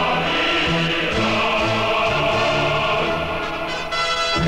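A large military men's choir singing a sustained Korean phrase with a full orchestra, the bass line moving under the held choral chord.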